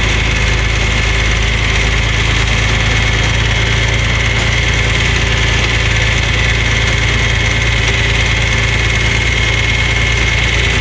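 Tractor engine running steadily, a constant low drone with a thin, steady high whine over it and no change in speed.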